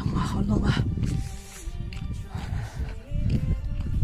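Background music with a steady low rumble underneath, and a woman's voice briefly near the start.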